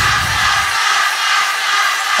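DJ transition in a soca mix: the beat's bass drops away within the first second and a loud, steady hissing noise effect fills the gap between tracks.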